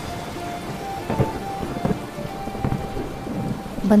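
Thunderstorm sound effect: steady rain falling, with thunder rumbling.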